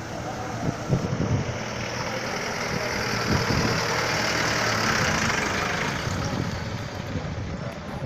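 A jeep driving slowly past close by, its engine and tyre noise swelling to a peak about four to five seconds in and then fading.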